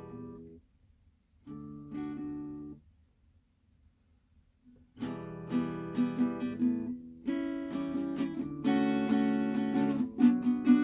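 Steel-string acoustic guitar strummed: a chord fades out at the start and another rings for about a second, then after a two-second pause a steady run of strummed chords begins halfway through.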